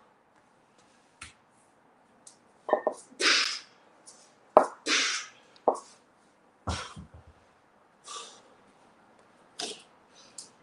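Sharp, hissing exhales, about six of them, from a man working through double kettlebell swings. A few sharper knocks come in the middle, and a heavy thud with small rebounds follows about two-thirds of the way through.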